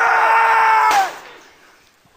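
An elderly man's long, wordless scream of anguish, held on one pitch and breaking off about a second in.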